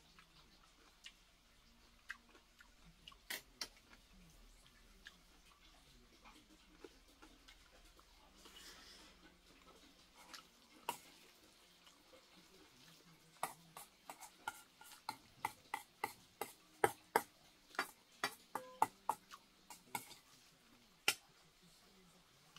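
A metal spoon clinking and scraping against a stainless steel bowl as rice is mixed with jjajang sauce. A few scattered clicks come first, then a quick run of clinks, about three a second, through the second half.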